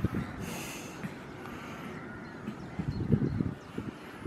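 A young goat sniffing close to the microphone, one short breathy sniff about half a second in, among irregular low thumps of wind buffeting the microphone.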